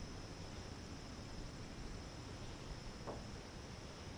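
Faint, steady outdoor background with a constant high-pitched hum throughout, and one brief faint sound about three seconds in.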